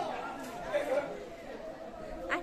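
Faint background chatter: several people talking quietly at a distance.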